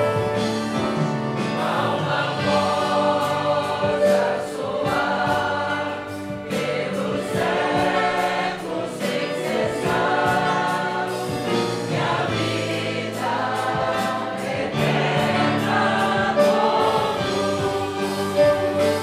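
A congregation singing a Portuguese hymn together in unison phrases, accompanied by acoustic guitar and violins.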